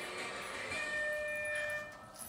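End signal of a countdown timer: one steady held tone starting a little before the middle and lasting about a second, as the timer reaches zero.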